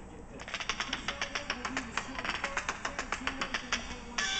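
The opening of a reggae track playing through an iPhone's built-in loudspeaker: a rapid, uneven run of sharp clicking taps with faint low notes beneath.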